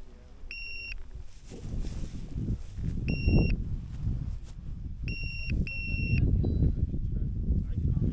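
Four short, high electronic beeps at uneven intervals, the last two close together, over a low rumbling background.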